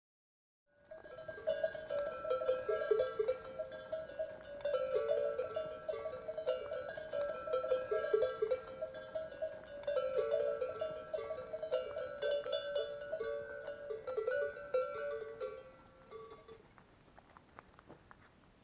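Bells on a herd of goats clanking irregularly as the animals move, several bells of different pitch ringing together; the ringing fades out near the end.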